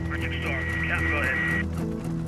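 A thin, band-limited voice over the aircraft radio, with background music and a steady low hum underneath.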